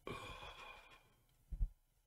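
A man's long, satisfied 'ahh' sigh after a sip of coffee, lasting about a second, followed by a dull thump about a second and a half in.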